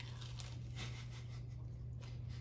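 Faint, irregular crunching and chewing of a bite of a deep-fried Taco Bell Chicken Crispanada, over a steady low hum.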